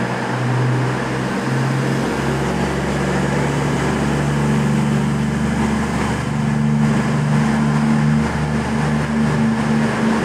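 Class 220 Voyager diesel-electric train departing, its underfloor Cummins diesel engines working under load as it pulls away and gathers speed. The engine note steps up in pitch about four seconds in and holds there.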